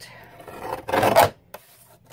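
Paper trimmer fitted with a deckle-edge blade cutting through cardstock: a rasping cut that builds over about a second and stops abruptly.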